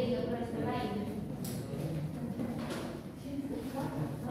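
Indistinct talking, mainly a female voice, among students in a classroom.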